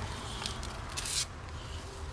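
Scraping and rubbing as a hand grips and turns a red-footed tortoise's shell, with a short scrape half a second in and a louder rasping scrape about a second in, over a low steady rumble.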